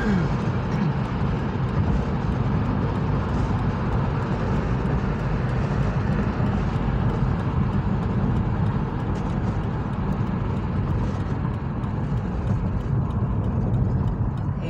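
Steady road and engine noise heard inside a car's cabin while driving on the freeway: a dense low rumble of tyres and engine with a hiss above it. The hiss thins a little near the end.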